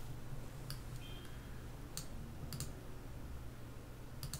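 A few short, sharp computer mouse clicks spaced out over the seconds, over a low steady hum.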